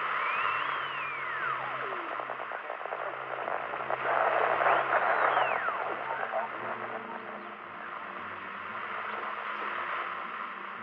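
Old-time radio static, a steady hiss with crackle, crossed by two whistling tones that rise and then fall, like a dial being swept between stations. The first comes near the start; the second, with the loudest burst of static, comes about halfway through.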